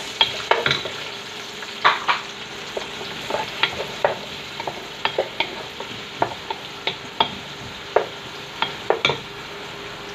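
Onions sautéing in hot oil in a pot, sizzling steadily, while a wooden spatula stirs them and knocks against the pot at irregular intervals, a few times a second.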